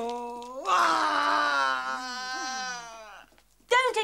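A cartoon character's long, drawn-out wailing cry on one held voice. It swells louder about half a second in, then slowly sags in pitch and fades away after about three seconds.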